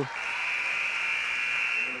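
A steady high-pitched tone holding for nearly two seconds over faint gym ambience.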